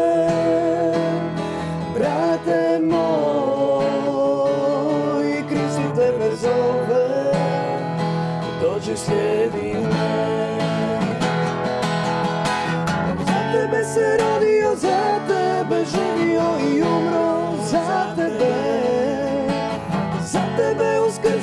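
A woman singing a song while accompanying herself on acoustic guitar.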